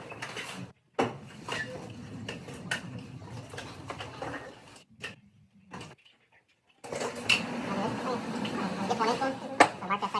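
Metal clanking and rattling from cattle shifting against steel headlock stalls, scattered knocks throughout, with indistinct voices toward the end.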